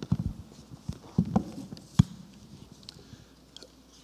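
A handful of low thumps and knocks from a microphone being handled at a lectern, in small clusters near the start and just after a second in, with one sharp knock two seconds in.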